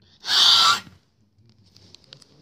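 A short, loud, breathy hiss made with the mouth, a 'khhh' sound effect for the toy fight, lasting about half a second, followed by a few faint clicks of plastic figures being handled.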